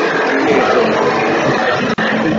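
Music, possibly with guitar, playing loudly and continuously, with a man's voice partly heard through it.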